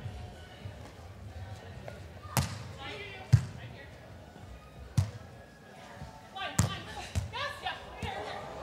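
A beach volleyball struck by hand four times in a rally, starting with the serve: sharp slaps spaced one to two seconds apart in a large indoor hall, the second the loudest.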